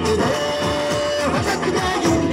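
Recorded Indian film-song music playing for a musical fountain show: an instrumental passage with one held melody note early on, over a steady accompaniment, with no singing.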